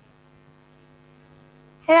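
Faint, steady electrical mains hum with a stack of overtones on the call audio. A woman's voice begins "Hello" right at the end.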